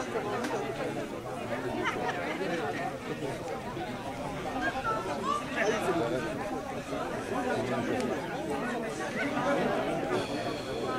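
Several people talking at once in the background: a steady, overlapping chatter of voices with no single clear speaker.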